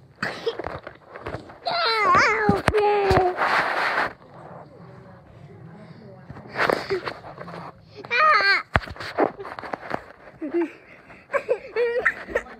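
Young children's high-pitched vocalising, gliding squeals and giggles, in several loud bursts without clear words, with a few sharp knocks in between.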